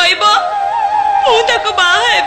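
A voice singing an ornamented melody line, with quick turns in pitch and then a long, wavering held note from about the middle.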